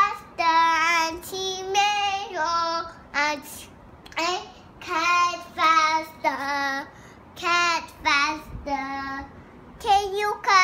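A toddler singing a made-up sing-song tune in a string of short, level-pitched notes, with brief pauses between phrases.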